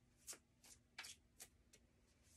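A deck of oracle cards being shuffled by hand: faint, separate card swishes, about five in two seconds.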